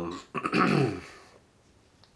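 A man's voice: a hesitant 'um' and then a throat-clearing sound that dies away about a second and a half in.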